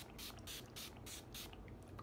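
Finger-pump setting spray bottle misting a face: about five quick spritzes in a row, roughly three a second, each a short soft hiss.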